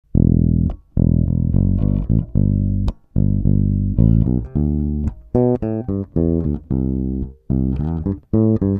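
Electric bass guitar played fingerstyle: low, held notes with short gaps for the first half, then a quicker run of higher melodic notes.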